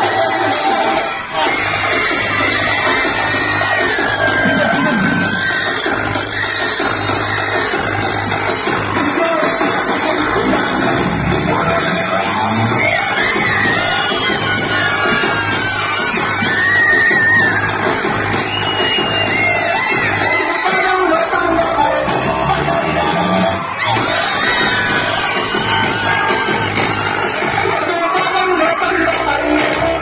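Recorded song with a singing voice over a steady beat, played loud through a PA loudspeaker as dance music for a Bonalu folk dance.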